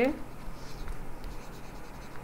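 Stylus scratching across a writing tablet as words are handwritten, a faint uneven scratch with small strokes.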